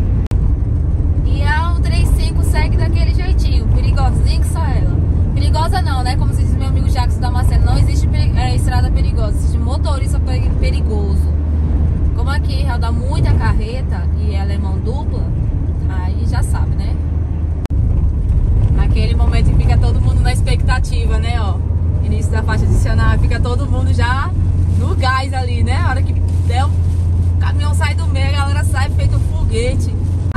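Steady low road and engine rumble inside a moving car's cabin on a highway, with a voice running over it through most of the stretch.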